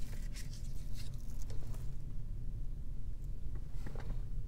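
Handling noise: soft rustles and light clicks as a small folding mirror is handled close to the phone's microphone. A steady low rumble runs underneath.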